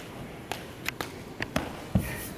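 Several light taps and knocks at irregular intervals, ending in a louder low thump.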